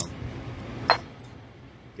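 A washer being worked loose inside the actuator body: one sharp click about a second in, over a low steady hum.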